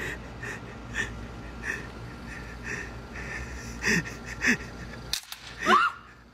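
Wheezing, breathy laughter in short gasps about every half second, with a few voiced squeaks, ending in a loud sharp gasp or shriek.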